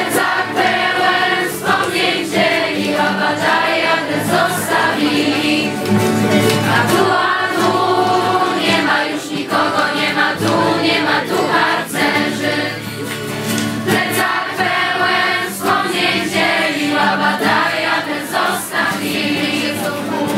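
A group of young voices singing a song together in unison to a strummed acoustic guitar.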